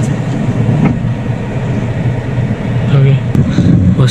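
A car's steady low rumble as it creeps forward at walking pace while being steered into a parking bay, with a man's voice briefly about three seconds in.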